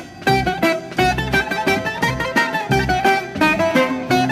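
Instrumental introduction of a Greek laiko song from a 45 rpm record: a plucked-string lead melody over a regular bass and chord rhythm.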